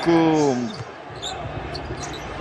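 A man's voice slides down in a long falling note, then gives way to basketball-arena noise: a ball being dribbled on the hardwood court under a steady crowd murmur.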